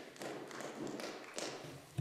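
Faint rustling and light tapping in the debating chamber, with no voice, and a sharper click right at the end.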